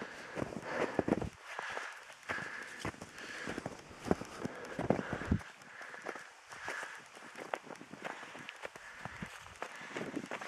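Footsteps of a walker in boots on snow, a run of steady, regular steps.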